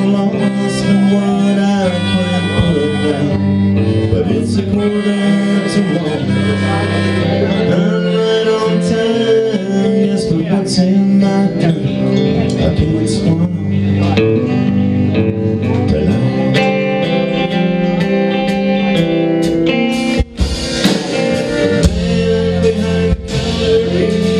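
Live country-rock band playing an instrumental break: a harmonica lead over electric guitar, pedal steel guitar and drums.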